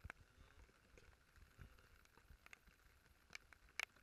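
Near silence broken by faint, irregular ticks of raindrops striking close to the microphone, about two a second, with one louder tap near the end.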